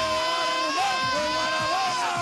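One long, drawn-out shout held at a steady high pitch for about two seconds, with other crowd voices beneath it.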